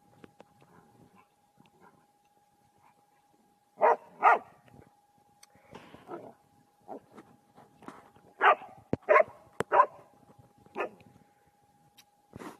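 A dog barking in short, sharp barks during play with another dog: two loud barks close together about four seconds in, then a quicker run of barks from about eight to eleven seconds in.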